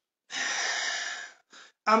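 A man's long, noisy breath of about a second, then a brief second puff of breath just before he starts to speak.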